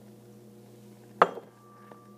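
A single sharp clink or knock a little over a second in, with a brief ringing tail, against a faint steady background hum.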